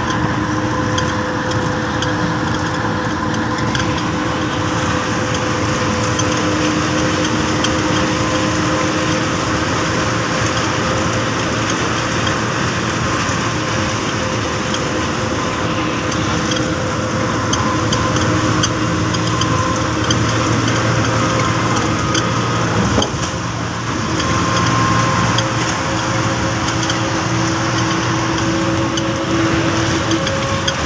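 A moving road vehicle heard from inside its cabin: a steady engine hum over road and wind noise. The level dips briefly about three-quarters of the way through.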